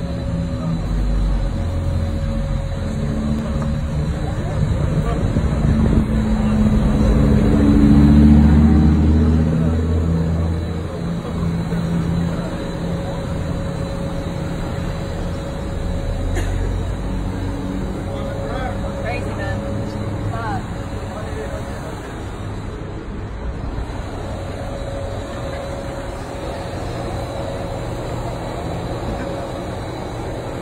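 A car engine running in the street, building to its loudest about eight seconds in and then settling to a steadier run, with voices from the crowd around it.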